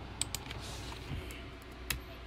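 A handful of sharp clicks and crackles from a clear plastic water bottle being gripped and raised to the mouth, over a low steady hum. The loudest click comes near the end.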